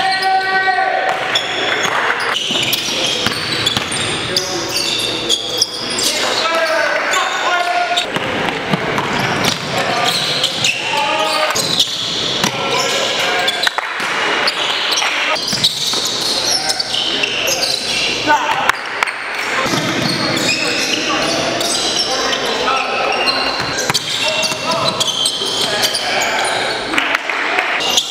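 Basketball game sound in a gym: a ball bouncing on the hardwood floor among many short thuds, over indistinct shouting and chatter from players, all echoing in the large hall.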